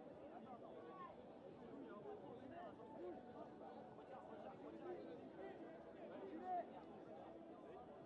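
Faint, distant chatter of many voices from players and spectators around the pitch, with one louder call about six and a half seconds in.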